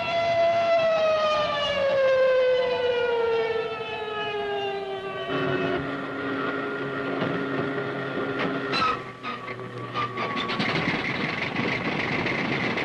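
An air-raid alarm siren winding down, one long wail sliding slowly lower in pitch for about five seconds. It gives way to a steadier, lower hum and a sharp knock, and near the end a fighter plane's engine starts running.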